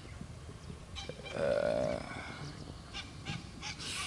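A single short animal call, a little under a second long, about a second in, pitched and slightly buzzing. Faint outdoor background noise throughout.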